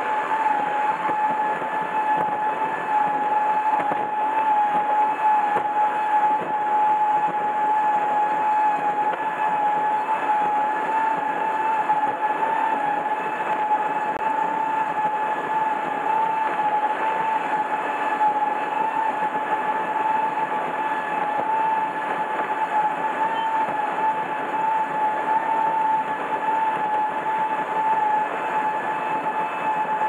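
Powerboat's engine running at speed, heard onboard: a constant, unchanging whine over a steady rush of wind and water.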